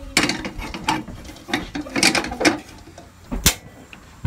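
A stainless steel pot set down on a gas stove's grate, then the burner's igniter clicking as the knob is turned, several irregular clicks and knocks with the sharpest near the end as the burner lights.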